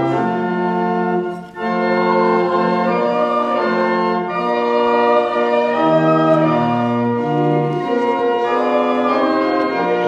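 Church organ playing a hymn in sustained chords, with a brief break about a second and a half in.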